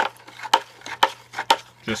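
Wooden spoon stirring saltwater hard in a plastic bucket, knocking against the bucket about twice a second with splashing water in between, to dissolve freshly added reef salt.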